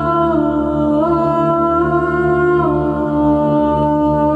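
A woman's voice singing long held notes that step from one pitch to the next, over a steady low drone.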